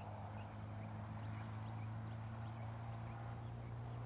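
Outdoor pond ambience: a steady low hum with a fine rapid pulse, a constant thin high-pitched insect drone, and scattered short, falling chirps from small animals.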